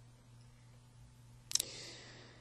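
Quiet pause with a faint steady low hum; about one and a half seconds in, a sharp mouth click and a short in-breath from the woman speaking.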